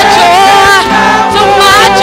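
A gospel worship team of several voices singing together in harmony into microphones, sustained and continuous.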